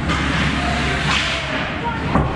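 Hockey skate blades scraping and swishing on the ice, with one louder scrape about a second in.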